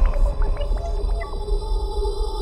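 Eerie synthesized drone from a soundtrack: steady held tones with short pitched blips and little glides over a deep low rumble.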